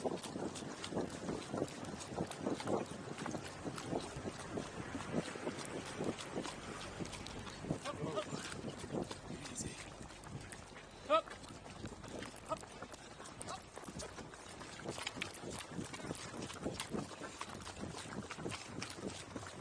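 Burro hooves and runners' footsteps on a dirt road, close up from a camera riding on the burro's pack saddle: an uneven run of short knocks and steps, with voices in the background. About eleven seconds in, a brief high-pitched call stands out as the loudest sound.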